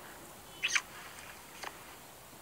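Kissing: a short lip smack about two-thirds of a second in, then a fainter click of the lips near the end as the kiss breaks off.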